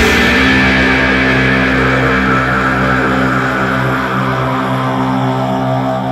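Heavily distorted guitar chord in a doom/sludge metal track, struck once at the start and left to ring, fading slowly, with no drums.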